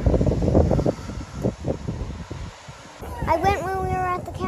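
Wind buffeting the microphone outdoors for about the first second, easing into quieter background noise with a few low bumps. A voice starts about three seconds in.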